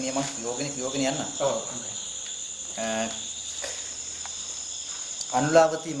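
Night insects calling in a steady high chorus of several held tones that runs on without a break.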